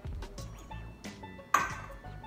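Small glass dishes clinking against a glass mixing bowl as dry spices are tipped in, with one sharp glass clink about one and a half seconds in, over background music.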